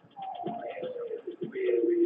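A voice sliding down in pitch and then holding a low note, over background music with a steady beat of about one thump a second and fast, even ticks.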